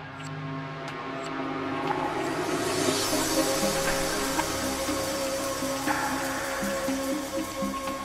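Live ambient electronic music from hardware synthesizers and grooveboxes (Behringer Crave, Elektron Model:Cycles, Korg Volca Sample 2): sustained pad tones over a pulsing low sequence. A wash of noise swells up about two to three seconds in and stays under the music.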